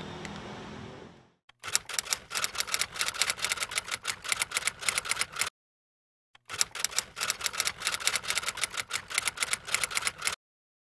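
Typewriter sound effect: rapid clacking keystrokes in two runs of about four seconds each, with a second's pause between them. It follows a brief, fading background hum in the opening second.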